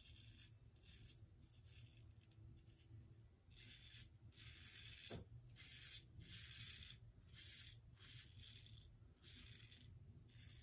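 1969 Gillette Black Beauty adjustable double-edge safety razor with a Voskhod blade scraping through lathered stubble on the neck: faint, short, repeated strokes about once or twice a second.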